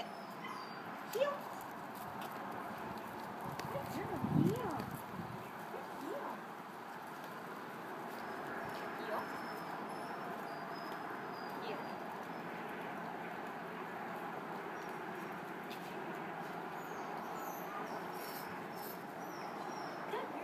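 Footsteps of flip-flops slapping on concrete as a person walks a small dog at heel, over a steady outdoor noise haze. A short, louder low vocal sound comes about four seconds in.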